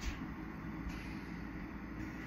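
Steady rushing of a glassworking bench torch flame as a glass rod is heated in it, with a low steady hum beneath.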